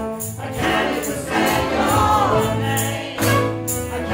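A choir and acoustic band performing a song: voices singing together over violins and drums with cymbal strokes.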